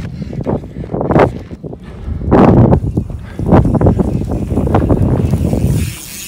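Heavy wind buffeting on the microphone of a fast-moving camera, a loud rough rumble that surges and drops repeatedly, as it follows a mountain bike over a dirt jump line.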